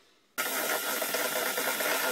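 Electric hand mixer switched on about a third of a second in, then running steadily at one speed as its beaters whip double cream in a steel bowl.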